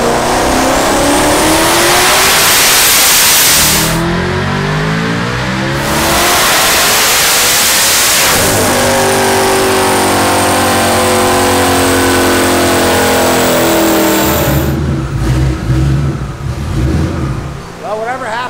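Twin-turbocharged 5.2-litre V8 of a 2020 Shelby GT500 at full throttle on a chassis dyno. Its pitch climbs steadily for about four seconds, dips briefly, then holds high and loud for several more seconds before the throttle is lifted and it drops to an uneven low idle near the end. This is a pull on which the clutch is slipping hard near the top of the rev range, as the tuner finds afterwards.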